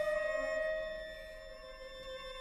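Contemporary chamber music for flute and string trio: one high note held steadily, slowly fading away.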